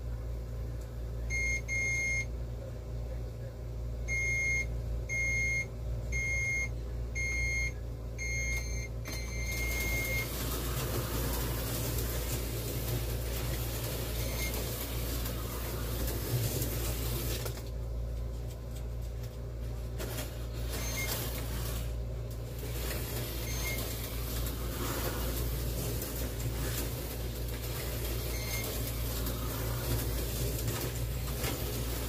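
Slot car race computer beeping a start sequence: a row of short electronic beeps, then a longer beep about ten seconds in. After it, two Tyco 440 X2 HO slot cars run on the track with a steady whirring hiss, which briefly drops out twice in the second half, with a few faint beeps from the lap counter.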